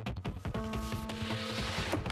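Background music: a fast, even beat under held chord notes, with a hissing swell building toward the end.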